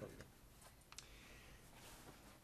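Near silence: quiet meeting-room tone with a few faint clicks, the sharpest about a second in.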